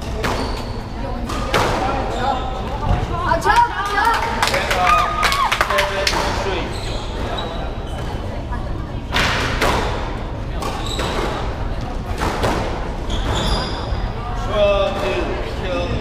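Squash ball rally: a string of sharp impacts as the ball is struck by rackets and hits the walls and floor of the court, with voices now and then.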